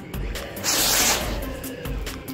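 A small homemade rocket firing from a PVC-pipe launch tube: a sudden loud hissing rush about half a second in that fades away within a second, over electronic background music with a steady beat.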